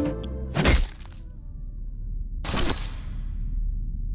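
Film soundtrack effects: a music cue ends with a sharp hit, and about two seconds later comes a crash with a long, bright fading tail, over a steady low rumble.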